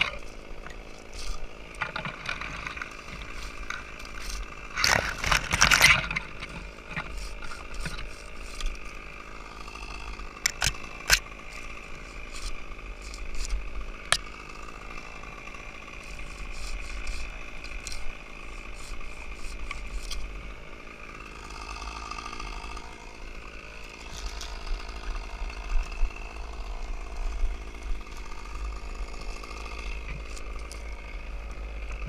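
Spruce branches and needles rustling and scraping against a climber's helmet and gear as he pulls himself up the trunk, with many small clicks and cracks of twigs. There is a loud scraping burst about five seconds in, and a faint steady hum underneath.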